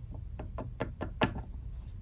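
A tarot card deck being handled on a tabletop: about six light, quick taps in a row over the first second or so, the last ones the strongest.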